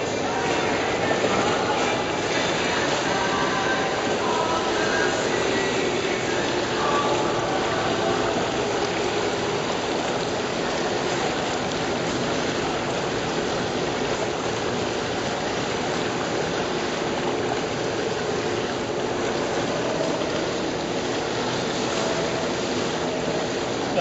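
Steady splashing and churning of water in a swimming pool as a swimmer strokes down the lane, with faint voices in the background.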